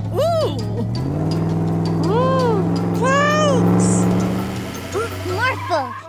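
Cartoon engine rumble of Morphle morphed into a monster truck: a steady low drone that steps up in pitch about a second in. Over it come several wordless vocal calls that rise and fall in pitch.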